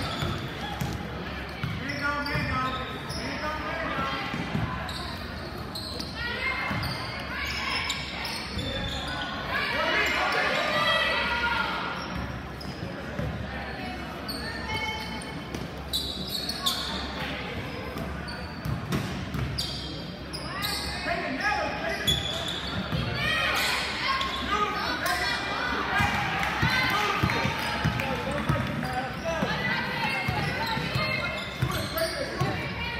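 Basketball game in a large gym: a ball bouncing on the court as players dribble, mixed with many voices of spectators and players calling out throughout.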